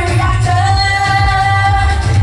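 A woman singing live through a PA system over loud amplified backing music with a heavy bass beat. She holds one long note through the middle.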